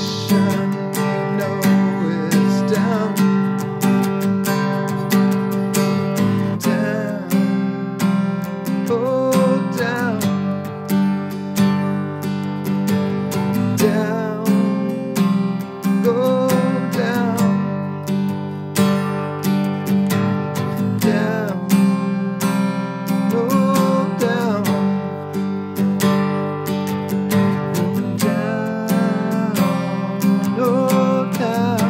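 Acoustic guitar strummed in steady chords, with a man singing over it in phrases that come and go every few seconds.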